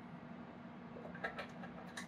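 Faint clicks of a plug-in wattmeter element (the 250-watt 'slug') being handled and seated in a Bird 43P wattmeter's socket, a couple of small clicks in the second half, over a steady low hum.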